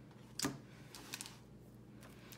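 A light tap as a paper notepad is set down on a wooden tabletop about half a second in, followed by a few faint clicks of paper being handled.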